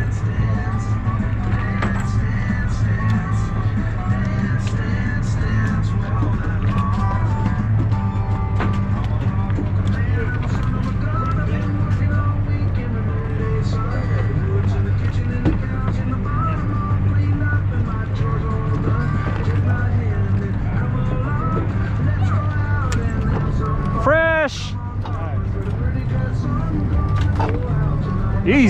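Steady low hum of the sportfishing boat's machinery, with voices and music from the deck in the background. About 24 seconds in, a short cry that dips and then rises in pitch.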